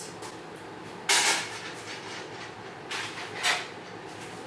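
Short kitchen handling noises as dishes are moved: one brief rush of noise about a second in, and two more close together around three seconds in.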